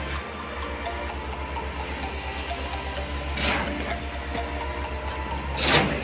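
Truck-mounted concrete pump running during a concrete pour, with a steady, rapid low pulsing. Two short hissing surges come through, one about halfway and one near the end.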